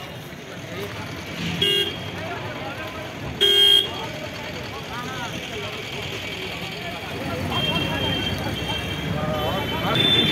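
Two short vehicle horn toots, about one and a half and three and a half seconds in, over the steady noise of street traffic and people's voices.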